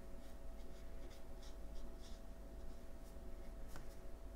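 Faint soft swishes of a wet watercolor brush stroking and dabbing on watercolor paper, a few short strokes spread through, with a slightly sharper tick near the end.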